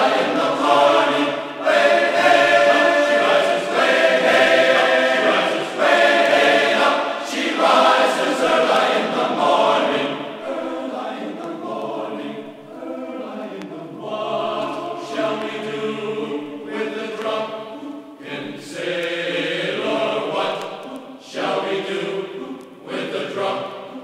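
Background music: a choir singing, loud for about the first ten seconds and softer after that.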